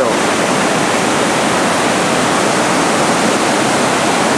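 Steady rush of turbulent white water in the river below.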